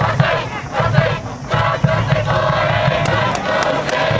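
A school cheering section at a high school baseball game chanting in unison over a steady drum beat, many voices together, with a brief dip about a second in.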